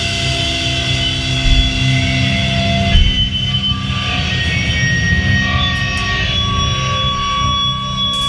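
Live band playing loud electric guitar, bass and drums, with long held notes ringing steadily over a heavy low end.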